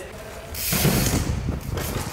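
Trial bike ridden fast across thick artificial turf toward a jump ramp: tyres rolling and the drivetrain and freewheel hub clicking, loud from about half a second in.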